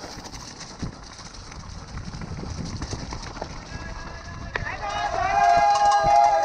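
Mountain bike rattling over a rough, wet forest trail with a steady rush of tyre and wind noise. About three and a half seconds in, spectators start shouting, and a long, loud held yell comes near the end.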